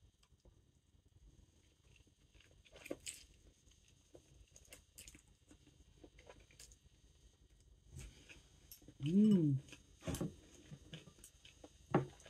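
A person chewing a mouthful of soft udon noodles, with faint wet mouth sounds and small clicks. About nine seconds in comes a short hummed "mm" that rises and then falls in pitch.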